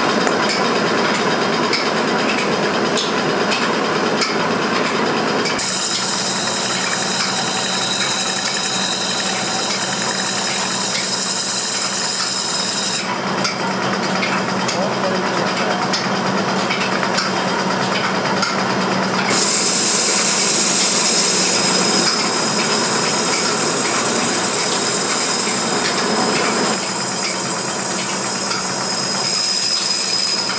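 A metal pan spinning on a lathe while a hand-held cutting tool is pressed against it, a continuous scraping and shaving of metal as curls of swarf come off. The tone and level shift abruptly several times.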